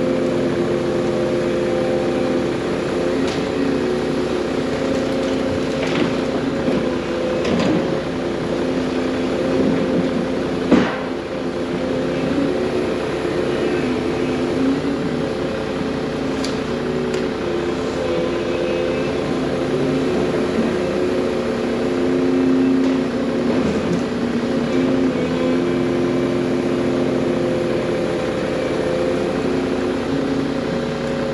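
Volvo crawler excavator's diesel engine running steadily under hydraulic load as it loads brush into an articulated dump truck, its pitch and level swelling slightly now and then. Several sharp cracks and knocks of branches and brush landing in the steel dump bed cut through it, the loudest about eleven seconds in.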